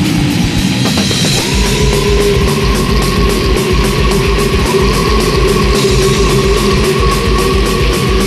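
Death metal song playing loud and dense. About a second and a half in, a rapid pounding low end comes in, and a long held note runs over it.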